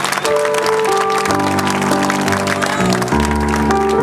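Live blues band playing held chords, with bass notes coming in about a second in and stepping lower near the end, over audience clapping.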